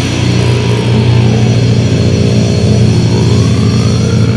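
A low, heavily distorted guitar note held and ringing through a drumless break in a goregrind song, with a fainter tone sliding down and then back up over it.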